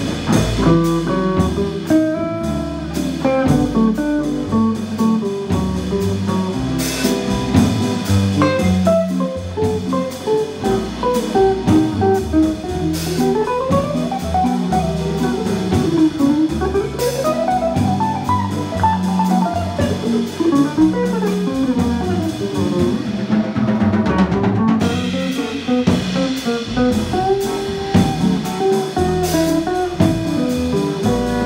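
Jazz combo playing a ballad: a hollow-body archtop guitar plays a single-note line over bass and drums, with long runs rising and falling in pitch through the middle.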